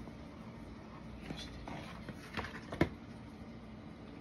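Knife cutting a slice from a tall frosted cake on a cardboard cake board: quiet scraping with a few light knocks, the sharpest a little before three seconds in.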